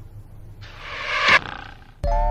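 A rising swell of noise, part of the music track, that builds for under a second and cuts off sharply, over a faint low hum.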